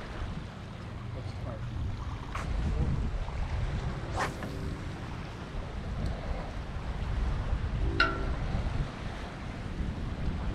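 Wind buffeting the microphone in a low, steady rumble over the wash of the sea, with a couple of brief faint sounds about four and eight seconds in.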